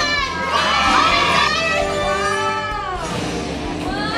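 Excited high-pitched screaming and shrieking from several voices, sliding up and down in pitch, easing off near the end.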